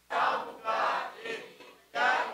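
Raised human voices calling out in short bursts of about half a second each, quieter than the amplified speech around them.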